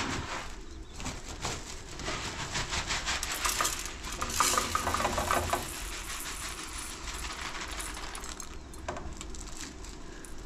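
A cloth sack is handled and shaken, and dry grain patters and rattles from it into a metal pot. The run of small clicks is thickest in the first half and thins out later.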